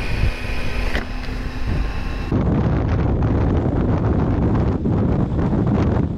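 Triumph motorcycle at road speed: engine running under wind rushing over the microphone. About two seconds in the sound changes abruptly to a rougher, louder wind rumble with the engine beneath it.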